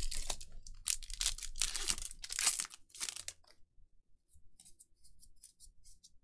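A Magic: The Gathering draft booster pack's foil wrapper being torn open and crinkled for about three and a half seconds, then faint light clicks as the cards are flicked through by hand.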